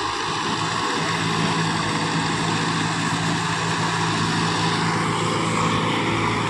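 Kubota tractor's diesel engine running at a steady, unchanging pitch with a low even hum as it pulls through a flooded paddy field under load. It runs quietly, which the owner calls almost soundless.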